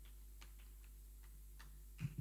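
Near silence: a steady low electrical hum with a few faint, irregular clicks.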